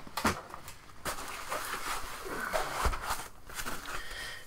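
White foam packing sheets being handled and slid out of a cardboard box: rubbing and rustling of foam, with two soft knocks, one just after the start and one about three seconds in.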